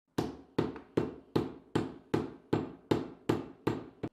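A wooden mallet beating a slab of zisha (purple) clay flat on a wooden table. It strikes ten times at an even pace, a little under three blows a second, each a sharp knock that dies away quickly.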